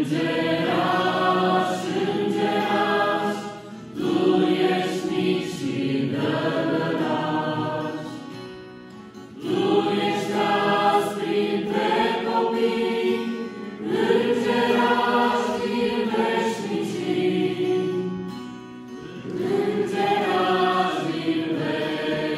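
Mixed youth choir singing a Romanian Christian hymn to a strummed acoustic guitar, in phrases of about four to five seconds with short breaths between them.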